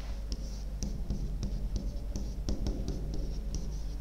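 A stylus writing on the glass of an interactive touchscreen whiteboard, making short, irregular light ticks and scratches as the letters are drawn.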